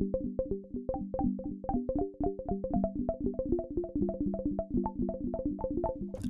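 Korg opsix synthesizer with its Filter-mode operators' resonance turned up, pinged by LFOs so that a held chord comes out as rapid short plucked pings in a faux arpeggio. The pings are of uneven loudness and grow busier about a second in.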